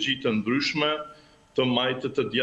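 Only speech: a man talking in Albanian, with a short pause just after a second in.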